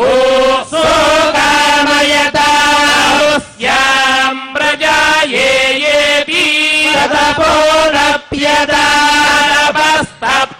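Hindu priests chanting Vedic mantras in long held, pitched phrases, broken by brief pauses for breath, the clearest about three and a half and eight seconds in.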